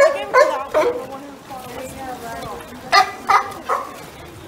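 Sea lions barking: a quick run of three barks at the start, then another three near the end.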